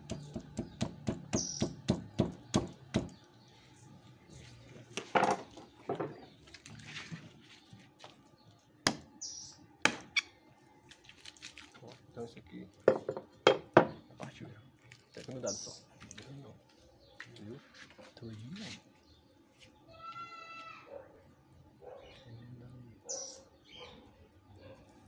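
Knife chopping at bone in a pig carcass: a fast run of sharp knocks, about four or five a second for the first few seconds, then scattered single heavier knocks as the butcher works the bone loose to open the carcass. A short high, rising animal call sounds once about two-thirds of the way through.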